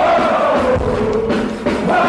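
Punk rock band playing live and loud, with several voices singing a chorus line together and holding a note.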